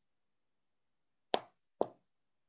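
Two short, soft clicks about half a second apart, in otherwise near silence.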